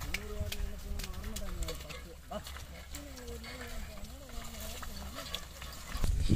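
A voice held in two long, wavering wordless tones, the first about two seconds long near the start and a higher one from about halfway, over a low steady rumble with scattered clicks.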